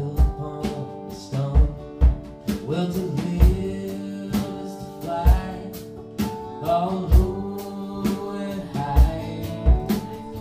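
Live country-gospel song played by a small band: acoustic guitar strumming, a drum kit with the kick drum thumping about once a second, and a man and a woman singing together.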